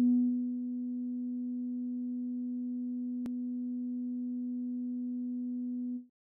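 Akai AX80 analog synthesizer on a 'Moogalike' patch, holding a single note with its filter closed down so that only a steady, almost pure tone remains. There is a faint click about halfway through.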